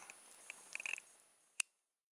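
A few faint small clicks, then one sharp click, after which the sound cuts off to complete silence.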